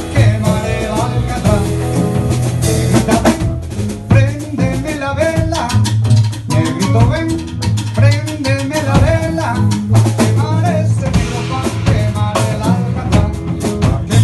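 Live Afro-Peruvian jazz band playing an instrumental passage: drum kit and cajón keeping the rhythm under double bass, piano and electric guitar, with a strong bass line.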